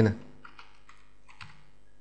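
Three faint computer keyboard key taps, spaced about half a second apart, as a value is entered in software.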